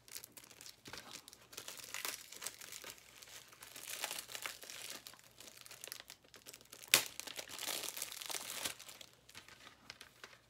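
Plastic shrink wrap on a DVD case crinkling and tearing in irregular spurts as it is picked at and peeled off by hand, with one sharp snap about seven seconds in.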